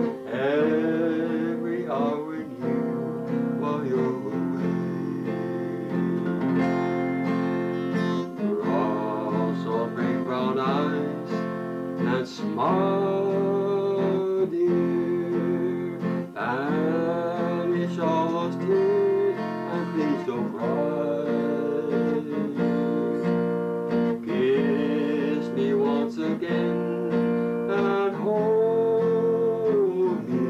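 Acoustic guitar strummed steadily in an old-time country style, with a long-held melody line over it whose notes scoop up into pitch.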